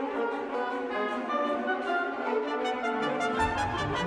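Orchestral music with the brass to the fore, French horns prominent. A low bass part comes in a little after three seconds in.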